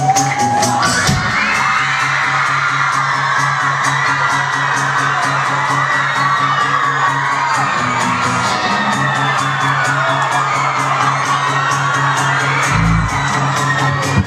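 Live rock band playing loud in a club, with the crowd screaming and cheering over the music, recorded from within the audience.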